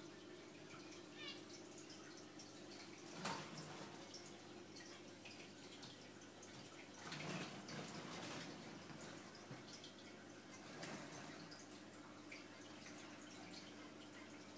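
Faint aquarium water sounds: a soft trickle and drip over a steady low hum, swelling slightly a few times.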